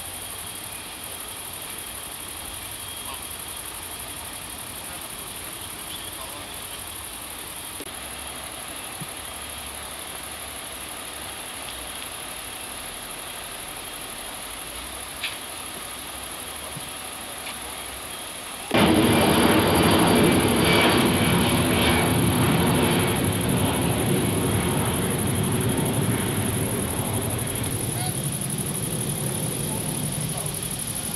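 A faint steady outdoor background. About two-thirds of the way through, a loud engine-like roar cuts in suddenly and then slowly fades.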